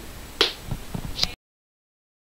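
A sharp snap about half a second in, a couple of lighter knocks, and another sharp snap, after which the sound cuts off suddenly to dead silence.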